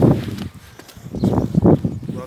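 Dull thumps and rustling from a handheld phone being jostled while walking, mixed with footsteps on the path. There are two loud clusters of knocks, one at the start and one about a second and a half in, with a quieter gap between.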